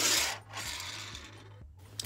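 Small plastic Hot Wheels race car rolling across a hard tabletop on its plastic wheels. It makes a rushing rolling noise that is loudest at the start and fades out over about a second and a half, with a small click near the end.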